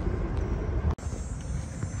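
Steady low outdoor background rumble, such as city ambience, with a brief sharp dropout about halfway through and a faint high steady tone after it.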